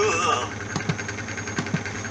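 The tail end of a children's song recording. A voice trails off in the first half second, then a steady low hum with fast, even faint ticking runs on as the track winds down.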